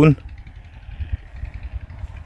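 Low rumble of a vehicle rolling slowly along a sandy dirt track, with a few soft knocks.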